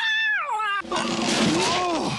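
A cartoon cat's long yowling meow that rises and then falls away. About a second in it gives way to a loud noisy wash with fainter wailing tones over it.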